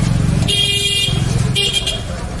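Street traffic: a vehicle horn honks twice, a half-second blast about half a second in and a shorter one near the end, over the steady low running of an engine close by.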